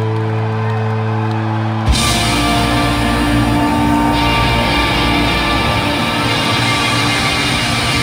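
Live rock band with electric guitars and bass, recorded from the audience: a held, sustained chord for about two seconds, then the full band crashes back in with a hit and plays on loudly.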